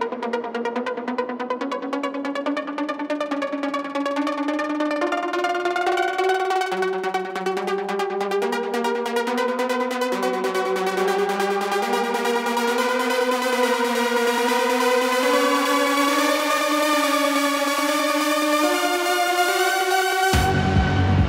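Dark psytrance in a breakdown: a synth melody stepping up and down in pitch with no kick drum or bass, over a fast ticking rhythm in the highs. It slowly gets louder as it builds.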